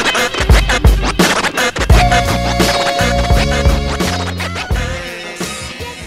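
Hip-hop beat with turntable scratching on a vinyl record, the track fading out over the last couple of seconds.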